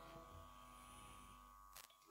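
Near silence: a faint steady hum with a brief click near the end.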